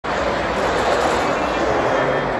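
Electric ice-racing cars of the Andros Trophy sliding through a corner on the ice track: a steady rushing noise of tyres on ice and snow, with no engine note.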